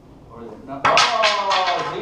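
A person's loud voice starting suddenly about a second in, falling in pitch with a quick pulsing beat like a burst of laughter, then fading.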